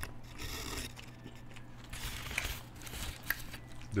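A bite into a beef Quesalupa, then soft, quiet chewing with a few small mouth clicks; the doughy, gummy shell gives little crunch.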